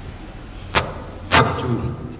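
Two sharp knocks or strikes about half a second apart, the second louder and followed by a brief tail, over low room noise.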